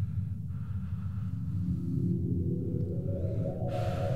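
Dark, droning film-score soundscape: a steady low rumbling drone with tones rising slowly over it, and a short hiss near the end.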